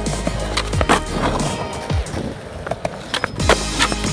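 Skateboard rolling on concrete with a string of clacks and knocks from wheels and deck. Near the end come the loudest knocks as the rider pops an ollie and bails off the board. Music plays under it.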